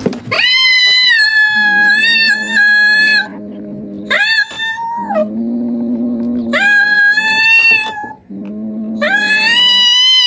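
Domestic cats caterwauling in a standoff: four long, drawn-out high yowls, with a lower, quieter call between them.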